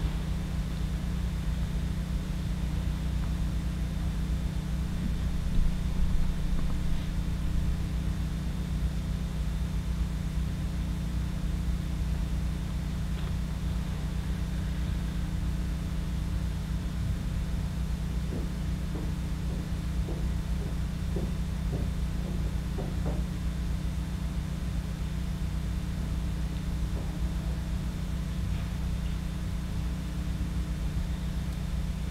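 Room tone: a steady low hum and rumble with no speech, broken only by a few faint, brief sounds after about 18 seconds.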